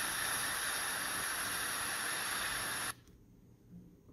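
Small loudspeaker driven by an ESP32 sound-playback board, playing a steady hiss-like noise track that cuts off suddenly about three seconds in. Afterwards only a few faint ticks are heard.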